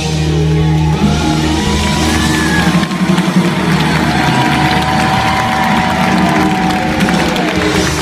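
Live band sustaining a closing chord at the end of a rock song while the concert audience cheers, with whoops and whistles rising over it.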